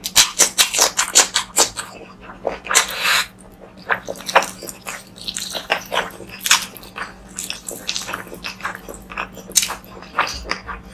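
Close-miked mouth sounds of eating curry with rice by hand: wet chewing and lip smacks in quick, irregular clicks, with one longer, noisier sound about three seconds in.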